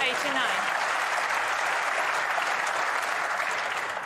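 Audience applauding in a snooker arena: steady clapping that swells just before and dies away just after.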